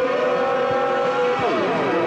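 Live recording of a post-punk band playing: long held droning notes over drum hits. About a second and a half in, the notes swoop down in pitch and back up.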